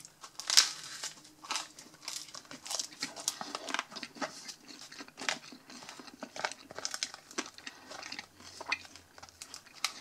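Crusty baguette scraped and wiped around the inside of a thin plastic tub of meat salad, giving irregular crinkling and crackling of the tub wall and bread crust, loudest about half a second in.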